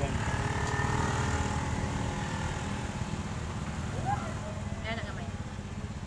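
A vehicle engine running nearby, a steady low rumble that is loudest in the first couple of seconds and slowly fades.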